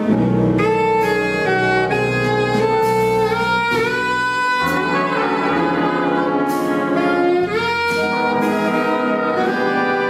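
Jazz big band playing: saxophones and brass in held chords that change every second or so, with sharp accents.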